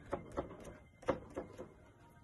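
A hand dabbing and rubbing wet oil glaze on a stretched canvas: a run of short, irregular taps, about seven in two seconds.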